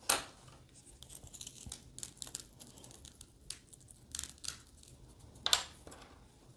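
Paintbrushes and small painting tools handled on a work table: short scratchy rustles and scrapes, with a sharp clack right at the start and another, louder one about five and a half seconds in.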